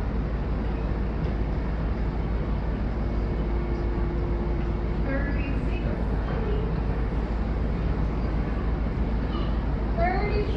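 A steady, loud low rumble, with faint voices now and then, a brief held tone in the middle, and no music or singing.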